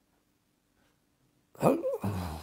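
Near silence for about a second and a half, then a man's voice starts speaking loudly near the end.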